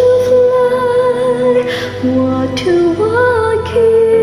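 A woman's voice singing long held notes of a slow ballad over a karaoke backing track. One note is held for about two and a half seconds, then the melody dips lower and climbs back up near the end.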